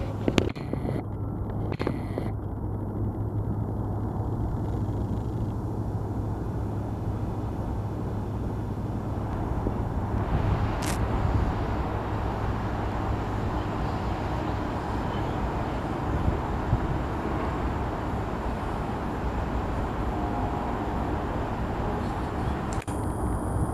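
Doublestack intermodal freight train rolling across a steel truss bridge, heard across the river as a steady low rumble that grows a little fuller about halfway through, with one brief sharp click.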